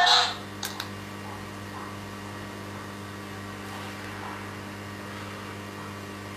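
A steady low electrical hum after music cuts off right at the start, with two faint clicks a little under a second in.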